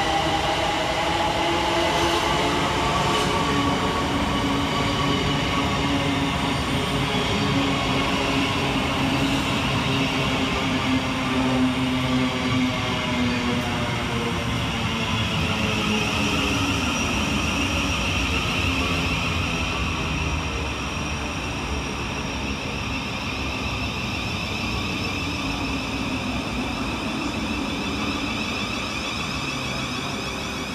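Electric multiple units at a platform: a Southeastern Class 375 Electrostar pulling away, its traction motor whine rising in pitch, while a Thameslink Class 700 Desiro City runs in alongside and slows to a stop, its motor tones falling, with a high steady whine in the second half.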